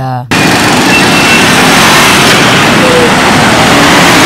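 Loud, dense street ambience: a crowd's chatter mixed with motorcycle and minibus engines.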